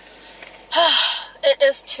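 A young woman's short, breathy voiced exclamation with a rising-then-falling pitch, about a second in, followed by the start of her speech.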